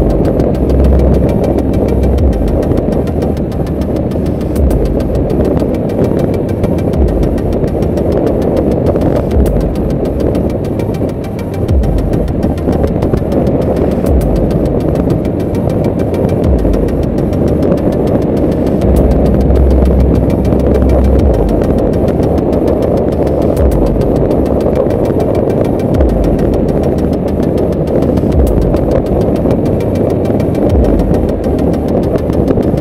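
Yamaha FZS V3 motorcycle's 149 cc single-cylinder engine running at a steady highway cruise, mixed with a loud, steady rush of wind on the microphone and irregular low wind buffeting.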